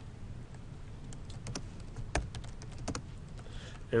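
Faint, irregular clicks of a computer keyboard and mouse, about ten scattered over a couple of seconds, one a little heavier near the middle, over low room hiss.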